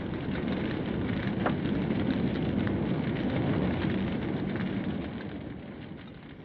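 Sound effect of a house fire burning: a dense, crackling rush with scattered sharp crackles, fading out over the last second or two.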